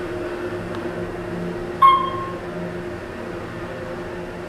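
Otis traction elevator car travelling up with a steady hum. A single short chime sounds about two seconds in as the car reaches the second floor.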